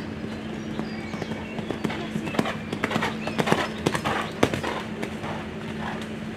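Horse's hooves cantering on an arena's sand footing: a run of thuds and sharp knocks that grows busier in the middle, over a steady low hum.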